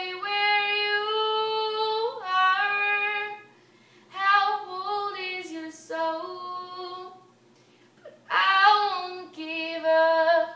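A young girl singing unaccompanied in long, held phrases, with short pauses for breath about four and seven seconds in.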